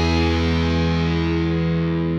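Programme theme music ending on a held, distorted electric guitar chord that rings on and slowly fades.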